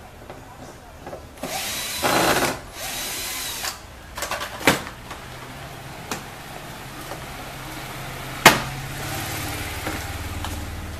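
Tool and plastic-trim noises from dismantling a car door panel: about two seconds of loud rasping, whirring noise, easing off for another second or so. Then scattered clicks and one sharp knock near the end, over a low hum that builds in the second half.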